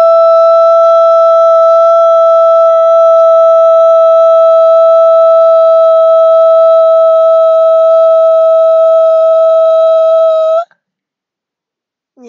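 One long, high vocal 'oh' held at an unchanging pitch, which stops abruptly near the end.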